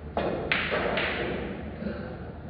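A pool shot: the cue tip strikes the cue ball, then a louder, sharper clack of balls colliding about half a second in, and another knock just before one second, as the balls hit each other and the cushions. A fainter knock follows near the end.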